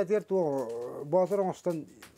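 A man's voice speaking, with pitch rising and falling and brief breaks between phrases.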